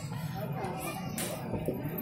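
Faint background chatter of voices over a low steady hum, with no clear line being spoken.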